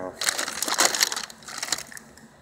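Plastic and packaging crinkling and crackling as it is handled and shifted: a dense, irregular run of crackles lasting most of two seconds.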